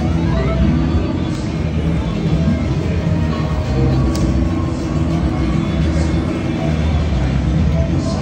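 Music playing steadily, with voices faintly under it.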